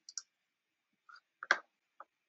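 Computer mouse clicking: a few faint clicks, the sharpest about one and a half seconds in.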